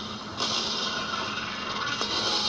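Cartoon soundtrack playing from a television speaker and picked up in the room: a hissing, noisy sound effect that gets louder about half a second in, over a steady low hum.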